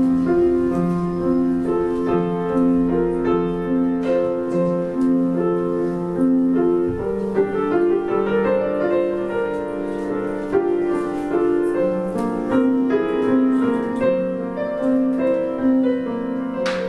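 Piano-voiced keyboard playing a repeating figure of sustained notes; about seven seconds in the figure shifts to a new set of notes.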